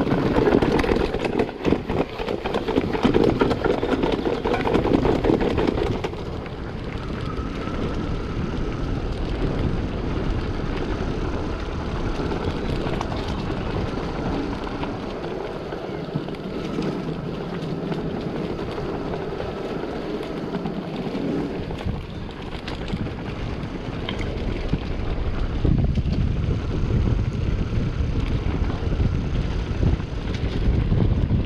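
Mountain bike rolling over stone steps and cobbles, its tyres, suspension and frame rattling on the stones. It is loudest and most jolting for the first six seconds, then settles into a steadier rumble, with wind on the microphone growing near the end.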